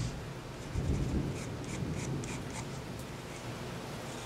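Graphite pencil scratching on a small paper card in short sketching strokes, with a dull low bump about a second in.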